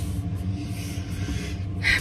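Small electric clip-on fan running with a steady low hum, with a brief rustle near the start.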